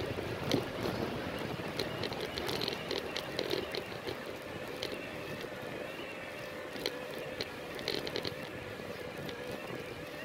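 Bike rolling over stone paving, with wind noise on the microphone and scattered light rattling clicks. A faint steady whine sets in about four seconds in.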